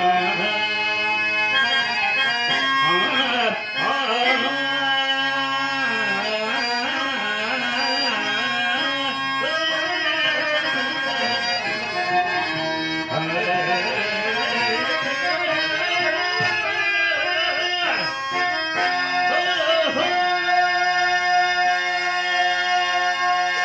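A singer drawing out a Telugu padyam verse in long, bending melismatic phrases, accompanied by a harmonium holding steady reed tones and tabla. Near the end the voice stops and the harmonium carries on alone.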